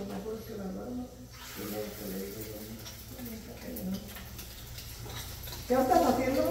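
Faint, indistinct voices over beaten egg frying in a pan on a gas stove, with a light sizzle and a few small clinks of plates.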